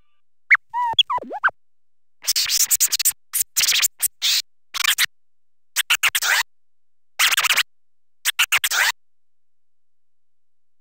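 Turntable scratch samples, at 125 BPM, previewed one after another. First come a couple of quick scratches that swoop up and down in pitch, then several clusters of short, choppy, hissy scratch strokes with silent gaps between the clusters.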